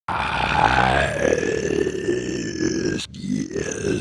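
A man's long, drawn-out vocal groan through a wide-open mouth, falling in pitch over about three seconds, followed by a shorter grunt near the end.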